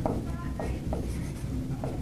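Marker writing on a whiteboard: a handful of short strokes, some with a faint squeak, over a steady low room hum.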